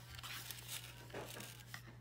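Cardboard packaging rustling and crinkling in short, irregular bursts as a plastic meal tray is handled and slid out of its paper box.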